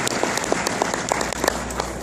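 Audience applauding, with individual claps standing out and the applause easing slightly in the second half.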